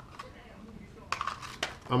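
A few sharp clicks and rattles from about a second in as the canopy is popped off a Blade 180 CFX mini helicopter's frame.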